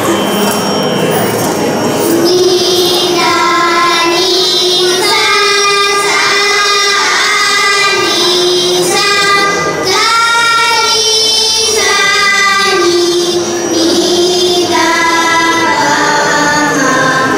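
A group of young girls singing Carnatic vocal music together, starting about two seconds in, with long held notes and bending ornaments on some of them.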